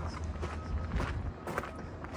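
Footsteps crunching on loose gravel, about two steps a second.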